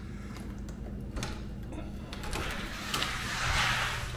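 Exterior house door unlatched and swung open: a faint click, then a rushing swish that swells and fades over the last two seconds.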